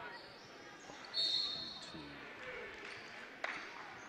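Referee's whistle blown once, a single steady high blast of well under a second about a second in, stopping play for a foul. Under it runs a faint murmur of the gym crowd and players, with a single knock near the end.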